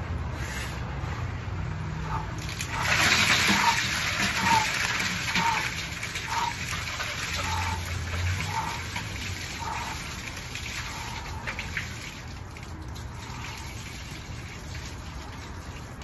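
Ice water sloshing and splashing in a plastic drum as a man sinks into it up to his neck, loudest for a few seconds about three seconds in, then settling.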